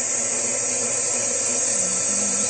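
KitchenAid Artisan stand mixer running steadily, its flat beater creaming butter in a stainless steel bowl.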